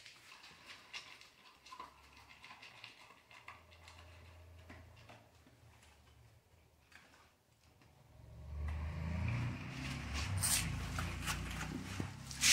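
A dog eating dry kibble from a stainless steel bowl: faint scattered crunching, with kibble clicking against the metal. About nine seconds in, a louder low rumble sets in and runs on under further clicks.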